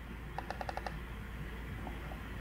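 A quick run of about six short, even clicks from a computer keyboard, over a steady low hum.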